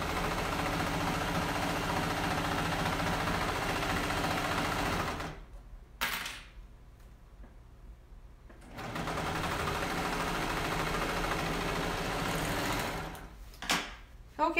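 Serger (overlocker) stitching and trimming through thick layers of velvet, its knife struggling to cut all the fabric. It runs steadily for about five seconds, stops with a click, then runs again for about four seconds before stopping.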